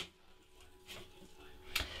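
Two faint clicks about a second apart from fingers pressing the controls of a guitar multi-effects pedal, over a faint steady hum.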